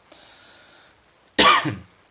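A man coughs once, loudly and briefly, about one and a half seconds in, after a faint breath.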